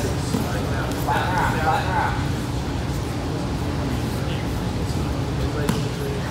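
Indistinct voices between about one and two seconds in, over a steady low rumble of room noise, with one brief knock near the end.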